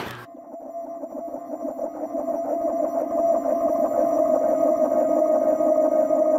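An electronic music drone, a steady buzzing tone that swells louder over about three seconds and then holds, opening a logo sting that leads into electronic outro music. It begins with a brief knock at the very start.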